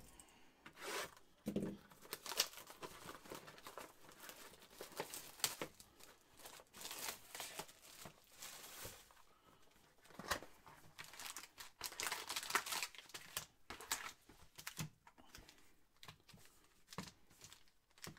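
Shrink-wrap being torn and crinkled off a cardboard trading-card box, then the box opened and its foil card packs handled, in irregular bursts of rustling and crackling.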